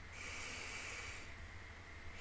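A person breathing out through the nose close to the microphone, one soft exhale lasting a little over a second, over a faint steady low hum.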